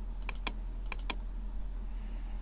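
Five sharp clicks of a computer mouse: a quick pair, then three in a row about a second in, over a faint low hum.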